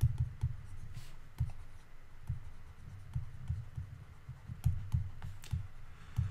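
A stylus writing on a pen tablet: light, irregular clicks and taps with soft low thuds as the pen strikes and moves across the surface.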